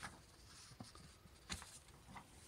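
Near silence with faint handling of paper sheets, a light rustle and a brief sharper tap about one and a half seconds in.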